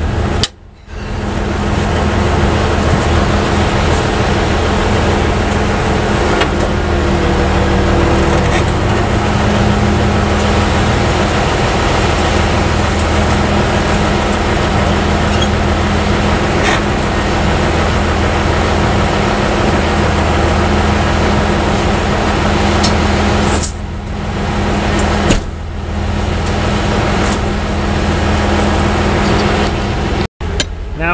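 Heavy truck diesel engine running steadily, with a loud, even noise and a low hum. The sound dips briefly twice near the end.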